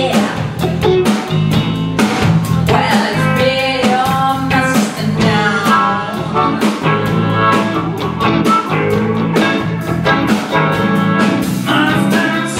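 Live blues band playing: a woman singing over electric guitars and a drum kit.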